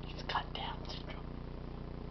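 A few faint whispered sounds in the first second, over a steady low hum.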